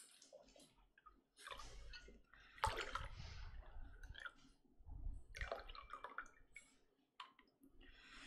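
A drink poured from a metal cocktail shaker into glass tumblers, splashing in several short pours, with a few clicks near the end.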